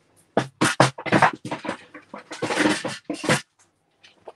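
Sheets of patterned scrapbook paper being handled and slid over the work surface: a run of short rustles and scrapes, with a longer one past the middle, then quiet near the end.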